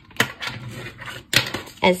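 Paper plate being folded and creased by hand, a papery rustle with two sharp crackles about a second apart.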